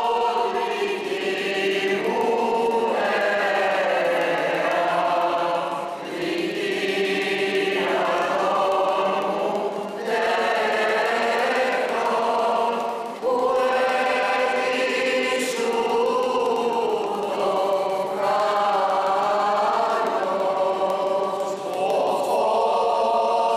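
A group of voices singing a slow Greek Orthodox hymn in unison, in long held phrases with short breaks between them.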